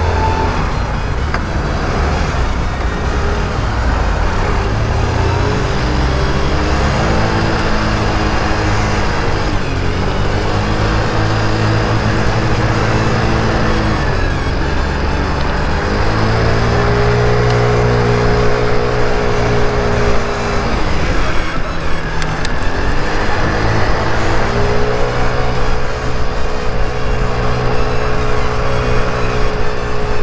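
Mondial Wing 50cc scooter's small single-cylinder engine pulling away, its drone rising in pitch as it accelerates and dropping back when the throttle eases, four times over, in stop-and-go city riding. Low wind rumble on the microphone runs underneath.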